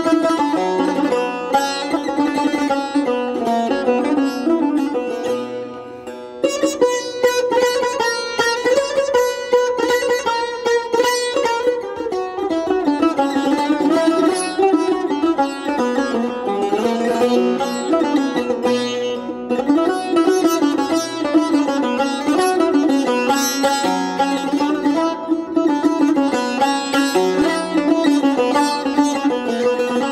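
Persian tar played solo with a plectrum: a melodic line of plucked notes with passages of fast repeated plucking. The playing drops briefly quieter about six seconds in, then picks up again.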